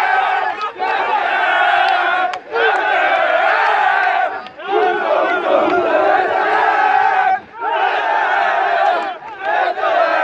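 A football team chanting and shouting together in a victory huddle, many men's voices in unison. The chant comes in loud repeated phrases of one to three seconds with short breaks between them.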